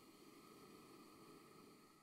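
Near silence, with a faint soft hiss that lasts about two seconds and then fades.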